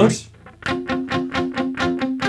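Semi-hollow electric guitar playing an F chord in a triad shape up the neck. It is picked in a quick, even rhythm of about five strokes a second, starting about half a second in.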